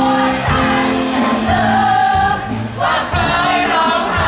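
A group of people singing along together over loud music.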